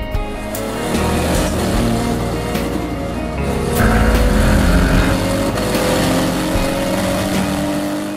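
Race car's turbocharged 2JZ straight-six at full throttle on a hillclimb, its pitch rising slowly and steadily through the second half as it pulls through a gear.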